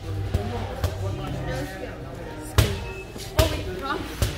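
A rubber ball bounced on a hard floor: four sharp thuds at uneven intervals, two in the first second and two more later on.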